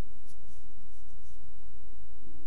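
A pause in speech: steady low hum under room tone, with a few faint soft rustles.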